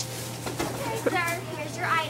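Brief, indistinct speech: a voice in short bursts about a second in and again near the end, over a steady low hum.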